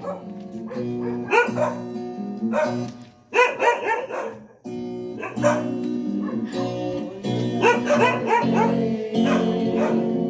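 A group of people singing a birthday serenade together from song sheets over instrumental accompaniment with sustained chords; the music briefly drops away twice around the middle.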